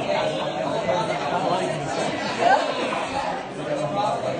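Many diners talking at once: a steady hubbub of overlapping conversation, with one voice rising briefly above it about two and a half seconds in.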